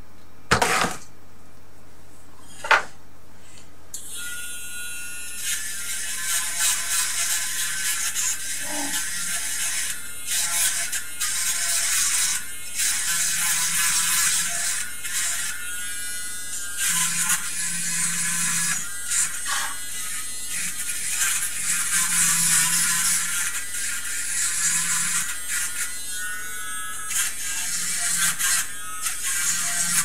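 Two knocks, then a small handheld corded electric tool working inside the amplifier's metal chassis: a high, hissy buzz with scraping that starts and stops in short bursts.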